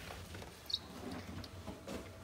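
A newly hatched chick peeps once, a short high falling note, about a third of the way in, over faint handling noise. A soft click comes near the end.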